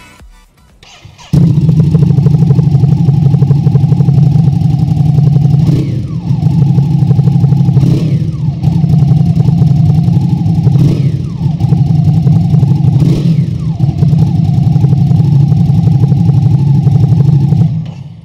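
Ducati Hypermotard 950's L-twin engine running through a Spark slip-on exhaust, cutting in suddenly about a second in. It holds a steady, deep note, and four times the pitch sweeps down as the revs fall back.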